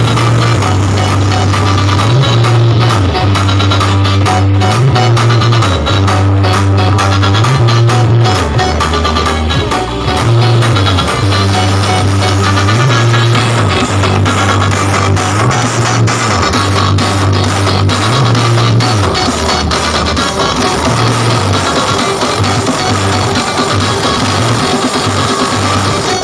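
Loud music with a heavy, repeating bass line, played at high volume through a tall outdoor stack of speaker cabinets and horns; the bass notes change every second or two.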